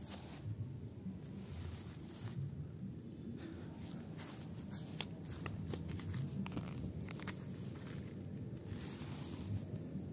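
Light handling sounds as a nylon tarp tent's guy cords and line-lock tensioners are worked by hand, with a few small clicks in the middle stretch, over steady low background noise.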